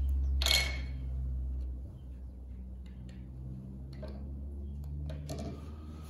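Small plastic items set down and handled on a glass tabletop: one sharp clatter about half a second in, then a few faint clicks, over a low steady hum that drops in level about two seconds in.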